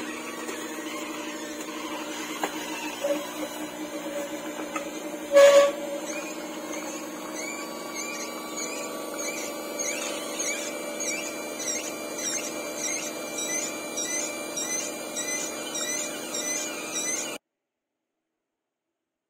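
Slow masticating juicer running with a steady motor hum as it crushes apple pieces. There is one loud crunch about five seconds in, then a quick repeating high squeak. The sound cuts off abruptly near the end.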